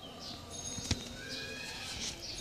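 Birds chirping in short, quick calls over steady background noise, with a single sharp click just under a second in.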